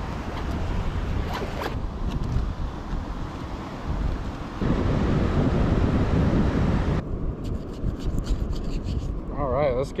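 Wind rushing over the microphone, its level jumping abruptly twice, with small clicks and rubbing from hands handling fishing tackle in the last few seconds.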